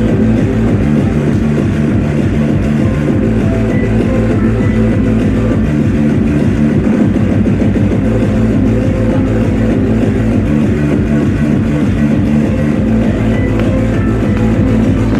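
Hardcore electronic dance music from a DJ set, played loud over a club sound system, with a steady kick-drum beat and no break.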